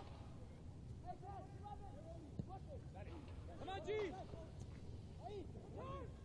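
Faint, scattered shouts and calls of voices across a soccer pitch, with a louder shout about four seconds in, over a low steady rumble.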